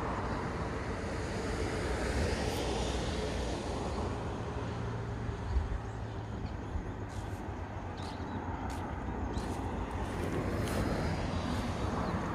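Outdoor road traffic: a steady rushing noise that swells as vehicles pass, once a couple of seconds in and again near the end.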